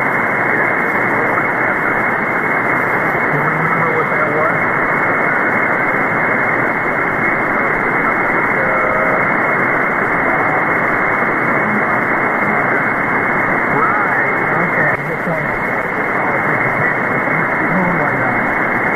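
Single-sideband receiver audio from an SDRplay RSPduo tuned to 1.930 MHz on the 160-metre amateur band: steady, loud band noise hiss cut off sharply at the top and bottom by the receiver's filter, with a weak ham operator's voice faintly buried in it.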